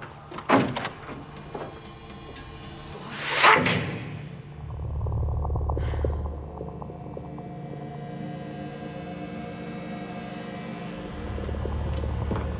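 A door shutting with a thunk about half a second in, a loud rushing whoosh at about three and a half seconds, then dramatic background music with a low, sustained drone.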